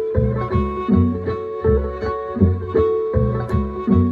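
Blues backing groove in F sharp: plucked guitar and bass in a steady repeating rhythm, with a sustained note held above it.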